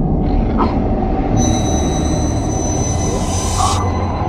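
Dark psytrance intro: a dense, low rumbling drone, with a shrill screeching sound laid over it from about a second and a half in. The screech holds steady high tones and cuts off suddenly just before the end.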